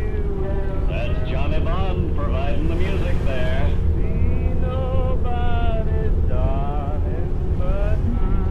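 A car's engine and road noise make a steady low rumble. Over it plays an old-time radio broadcast: a voice with thin, old-radio sound, held and sliding in pitch.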